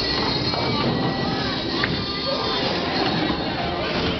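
Steady low rumble of bowling balls rolling down the lanes of a bowling alley.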